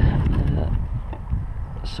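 Low wind rumble on the microphone of a head-mounted camera, with a few faint knocks.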